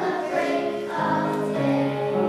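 A children's choir singing, holding long notes that shift in pitch about every half second to a second.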